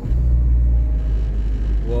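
Steady low rumble of a car driving along a street, heard from inside the moving car: engine and road noise.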